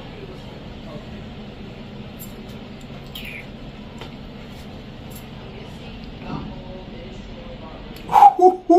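Steady room noise with a faint low hum, and a brief high squeak about three seconds in.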